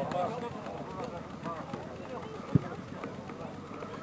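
Scattered voices and shouts of spectators and players, with one sharp thump of a football being kicked about two and a half seconds in.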